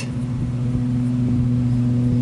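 A steady mechanical hum: a constant low drone with a few higher tones stacked above it, unchanging in pitch and level.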